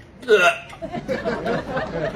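Stifled, hiccuping giggles: short, choppy bursts of held-back laughter in quick succession, following a loud surprised "ơ!" near the start.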